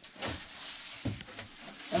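Handling noise from a plastic-wrapped composting toilet being pushed into place: a steady rustle of the plastic cover with a few faint knocks.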